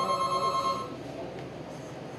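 A telephone ringing once: a steady electronic ring lasting about a second, then it stops.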